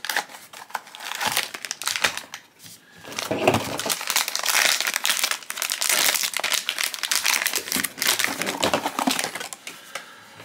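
A cardboard blind box being opened by hand, a few scattered clicks and rustles, then its silver foil inner bag being torn open and crinkled, a dense crinkling from about three seconds in that stops just before the end.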